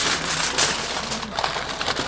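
Heavy-duty aluminium foil crinkling and crumpling continuously as it is folded and crimped by hand to wrap a rack of ribs.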